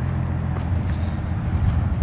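Steady low rumble of idling diesel semi-truck engines, with a couple of faint footsteps.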